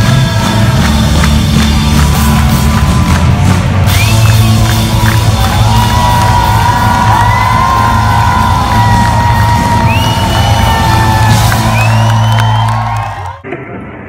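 Loud live band music heard from among the audience, with whoops and cheers from the crowd rising over it. The sound cuts off suddenly near the end.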